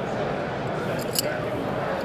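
A few light metallic clicks as the hook and spinner blade of a bucktail muskie lure are handled, over the steady chatter of a crowded exhibition hall.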